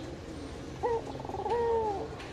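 Ringneck dove cooing: a short note about a second in, then a rolling trill that leads into a long, slightly falling coo.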